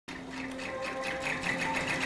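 Sewing machine stitching at speed, a rapid, even run of needle strokes that starts abruptly.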